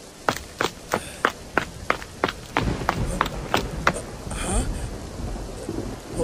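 Rain ambience with a low thunder rumble building from about halfway through. Over it runs a string of about a dozen sharp, evenly spaced knocks, roughly three a second, which stop about two-thirds of the way in.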